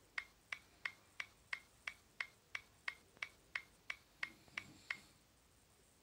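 Ticking-clock sound effect counting down a timer, about three even ticks a second, stopping about a second before the end.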